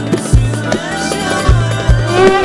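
Instrumental Turkish folk dance tune (oyun havası) played live on bağlama, violin and acoustic guitar over a steady low beat of drum thumps.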